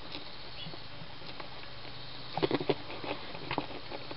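Cat grooming, its tongue making short licking clicks on its fur, in a quick cluster a little past halfway and a few more towards the end.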